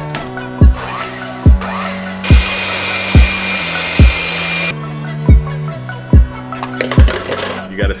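Background music with a steady drum beat. In the middle an electric hand mixer runs for about two and a half seconds, a steady high whir as its beaters turn in a plastic bowl.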